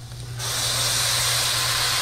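Soy sauce poured into a hot steel wok of sautéing pork and garlic, bursting into a loud sizzle about half a second in that holds as a steady hiss while it boils off into steam.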